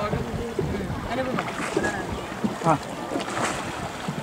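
Water and wind noise aboard a paddled wooden shikara on a lake, under quiet talk; a short spoken "haan" comes near the end.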